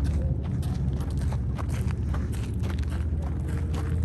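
Footsteps on gravel, irregular steps several times a second over a steady low rumble.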